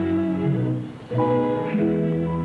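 Background film score music: held chords that dip briefly about a second in before a new chord comes in.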